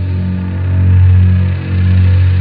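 Doom/sludge metal: a sustained, heavily distorted low droning note, swelling and dipping in loudness about once a second.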